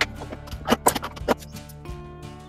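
Background music, with several short, sharp scraping strokes of a chisel paring wood from a half-lap joint's cheek, clustered in the first second and a half.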